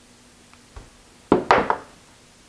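Metal parts, a steel pulley and the chisel-broach tool, knocking on a wooden workbench as they are handled and set down: a light tick, a low knock just before a second in, then a quick group of three sharper knocks about a second and a half in.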